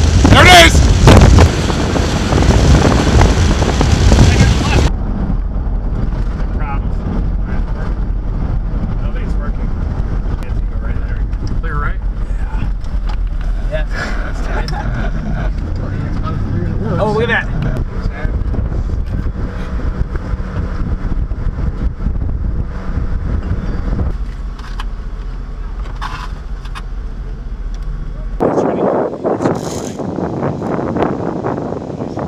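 Strong wind blowing across the microphone for about the first five seconds. After a cut, a steady low rumble comes from inside the storm-chase vehicle as dusty storm winds blow past, with a few indistinct voices.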